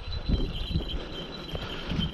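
Wind rumbling on the microphone with faint rustling and small knocks, under a faint, steady high-pitched tone that fades near the end.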